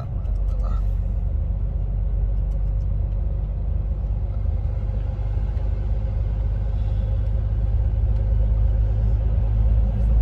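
Steady low rumble of engine and road noise inside a truck cab at motorway speed, growing slightly louder in the second half as the truck runs into a road tunnel.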